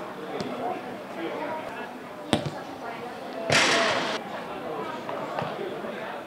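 Football pitch ambience with players' voices in the distance, a single sharp ball kick about two seconds in, and a brief rush of noise about a second later.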